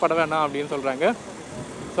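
A man speaking for about the first second, then a steady haze of wind and road noise while riding an electric scooter.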